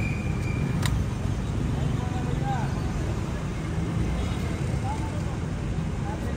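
Street ambience: a steady low traffic rumble with indistinct voices, and a sharp click about a second in.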